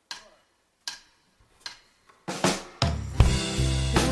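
Live band's drum kit opening the song with a few spaced single drum hits. About three seconds in, the full band comes in with sustained bass notes under the drums.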